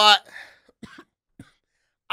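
A man coughing lightly and clearing his throat into a close microphone: one breathy cough followed by a few short catches in the throat over about a second.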